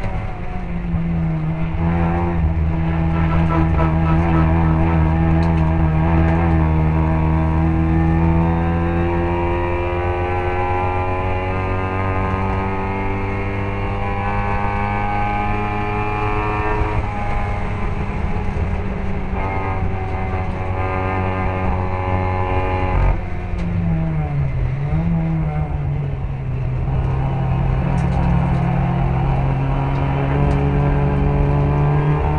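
Racing Mini's engine heard onboard at sustained high revs, its note climbing slowly for long stretches. The pitch drops suddenly a little past halfway, then dips and wavers about three quarters of the way through, as when braking and shifting down for a corner, before climbing again.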